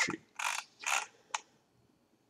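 Computer mouse scroll wheel ratcheting in two short runs, then a single sharp click.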